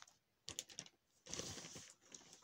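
Faint handling noise of small items: a few light clicks about half a second in, then a brief rustle.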